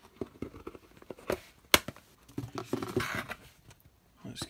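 Clear plastic cups and tubs being handled: a string of light clicks and knocks, one sharp click a little under two seconds in, then a rustle of plastic.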